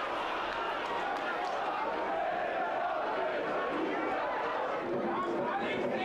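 Steady crowd noise from a football stadium: many voices from the stands blending into an even murmur.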